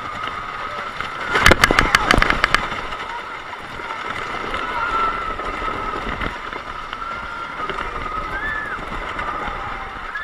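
CCI wooden roller coaster train running along its track, heard from a rider's seat: a steady rush of wind and wheel noise, with a burst of rattling knocks about a second and a half in. Riders' yells rise and fall faintly over it.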